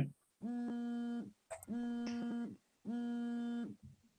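A steady, low-pitched electronic tone sounding three times, each just under a second long, evenly spaced.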